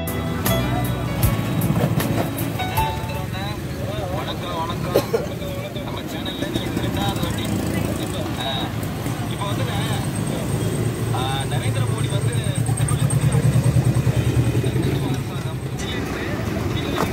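A Merritt sewing machine running and stitching cloth, a fast, even rattle of needle strokes that grows louder for a few seconds near the end.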